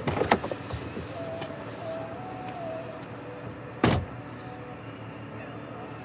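A car door being opened with a few clicks, then shut with one solid thud about four seconds in.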